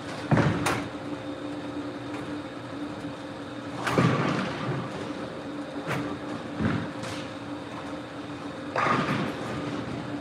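Bowling-centre background: a steady hum under several separate crashes and knocks from the lanes, the loudest about half a second in and at around four and nine seconds, typical of bowling balls rolling and striking pins.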